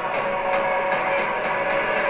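Movie trailer soundtrack playing back: a steady, dense music score with a held tone.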